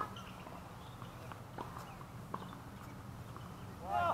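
Tennis ball struck by a racket on a serve, followed by a couple of fainter hits and bounces as the rally goes on, over steady outdoor background noise. A voice comes in near the end.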